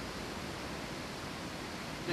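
Steady rushing of water in a large aquarium tank, an even hiss with no distinct events.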